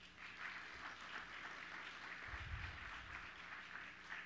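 Faint, steady applause from an audience.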